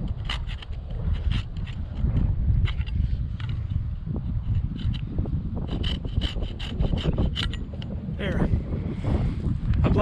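Folding hand pruning saw cutting through a young redbud's co-dominant stem with quick back-and-forth strokes. The strokes stop about eight seconds in as the cut goes through.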